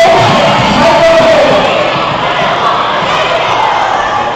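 Crowd cheering and shouting in a gymnasium, loud at first and dying down about halfway through.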